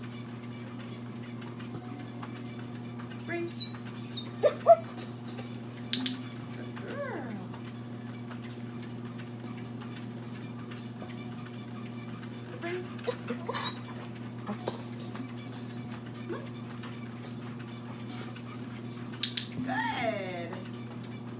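Dogs whining and whimpering in short high glides now and then, over a steady low hum, with a few sharp clicks in between.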